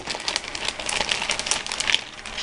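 Paper crinkling and rustling as craft items are handled, a dense run of small crackles.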